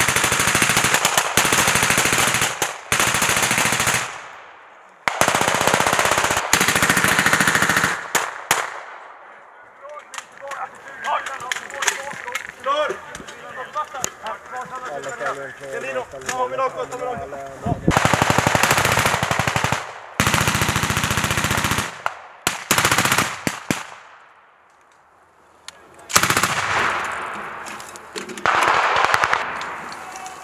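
Automatic machine-gun fire in long sustained bursts, several seconds each, separated by short pauses. In a lull in the middle, voices are heard among scattered single shots.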